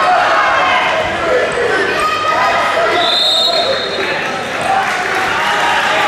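Many overlapping voices of coaches and spectators shouting in a large, echoing sports hall during a wrestling bout, with a brief high steady tone about three seconds in.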